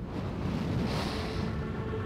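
Background music: a low held drone over a rushing, wind-like wash of noise, with the steady drone tones settling in about halfway through.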